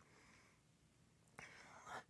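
Near silence: faint room tone, with a faint click about one and a half seconds in followed by a soft hiss.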